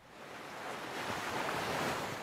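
Ocean surf: a wave washes in, swelling to its loudest near the end before easing off.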